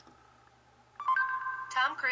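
Near silence, then about a second in a short electronic chime from the phone's Google Now voice search: a steady note joined by a higher one, held for about half a second. A synthesized voice reading out the answer begins right after it.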